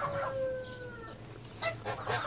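A rooster crowing in the background, one long drawn-out call sliding slightly down in pitch and ending about a second in. Near the end, geese start to honk with short, sharp calls.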